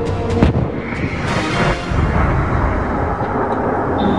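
Sonic boom sound effect: a sharp bang about half a second in, then a rumbling rush that swells and slowly fades, over background music.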